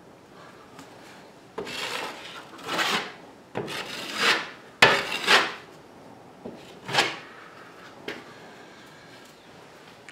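Wide metal putty knife scraping and smoothing caulk over a drywall patch, in about six short strokes with pauses between them.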